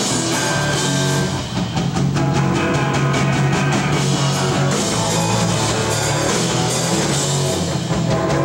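Rock band playing live: electric guitars, bass guitar and drum kit in an instrumental passage without vocals, the drums hitting in an even run through the middle.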